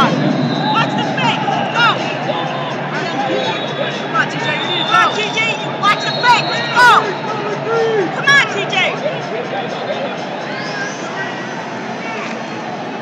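Hubbub of a large indoor arena crowd, with many overlapping voices, and scattered short squeaks from wrestling shoes on the mats. There is a single sharp click about seven seconds in.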